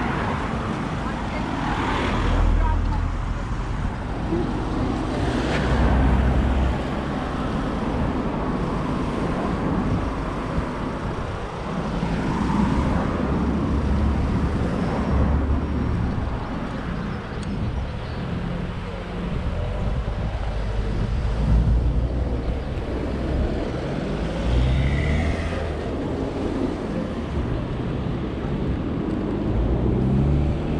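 Road traffic running along a town street, with cars passing close by: two louder swells of a passing vehicle in the first few seconds over a steady traffic noise.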